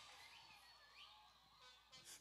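Near silence: faint room tone with a trace of music.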